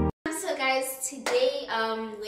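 Music cuts off, and after a brief gap a young woman's high-pitched voice sets in, exclaiming in short broken phrases.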